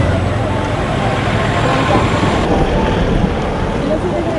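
Outdoor roadside ambience: a steady rush of traffic noise with faint distant voices, starting abruptly as the music cuts off.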